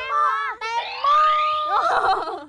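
Children shouting across a field. A long call is held on one pitch from about a second in, with a rising, whistle-like sliding tone over it.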